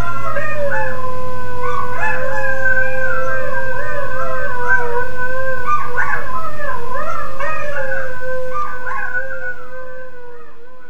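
Greyhounds rooing: several long, wavering howls overlapping at once, fading out near the end.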